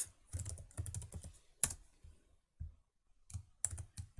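Typing on a computer keyboard: a quick run of keystrokes, then a single sharp key press and a few scattered ones near the end.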